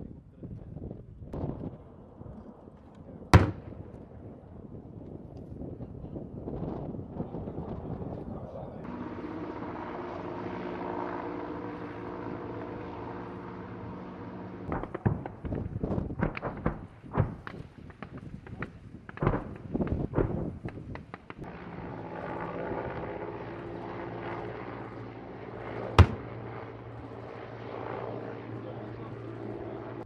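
Live-fire explosions on a range: a sharp bang about three seconds in, a rapid series of blasts in the middle as several rounds land, and another loud bang near the end. A steady engine drone runs beneath them for long stretches.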